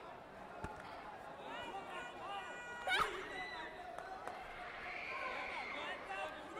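A sharp smack about halfway through, typical of a scoring taekwondo kick landing on an electronic body protector, with a lighter knock near the start. Shouts from coaches and spectators run throughout, echoing in a large hall.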